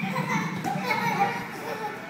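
Young children playing, their high-pitched voices chattering and calling out.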